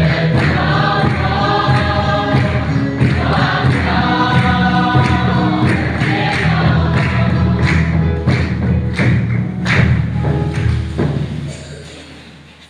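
A congregation singing a hymn together to electronic keyboard accompaniment, with hand clapping on a steady beat. The singing and music fade out shortly before the end.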